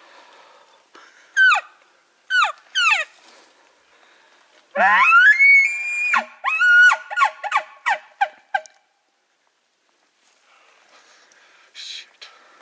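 An elk bugle blown on a bugle tube with a mouth diaphragm call: three short falling mews, then a long rising whistle held high, then a second note and a string of short chuckles.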